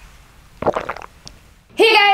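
A short gurgling sip drawn through a straw from a plastic cup, lasting under half a second about two-thirds of a second in; a woman's voice starts near the end.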